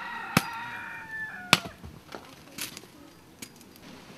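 A rooster crowing once, a held call with a falling end lasting under two seconds. Two sharp knocks of a machete chopping fall during the crow, and a few fainter knocks follow.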